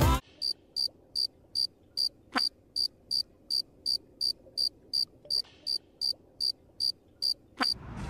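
Recorded cricket chirping sound effect: about twenty short, high chirps, evenly spaced at roughly two and a half a second, over near silence.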